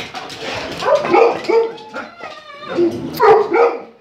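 A pet dog vocalizing: a run of several short barks and whines, each call bending in pitch.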